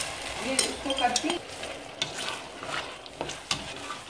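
Frozen peas dropping into a hot stainless-steel pan of onion-tomato masala and sizzling, while a spatula stirs them with scraping clicks against the pan.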